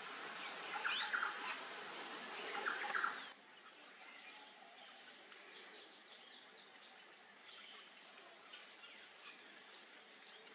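Wild birds calling in short sweeping chirps, several clear ones in the first three seconds. Then the sound drops suddenly to a quieter hiss of forest ambience with only a few faint, distant chirps.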